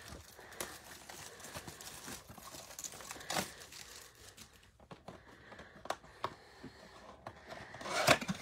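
A cardboard trading-card blaster box being handled and torn open: faint crinkling and rustling with scattered soft snaps and rips, the clearest about three and a half seconds in.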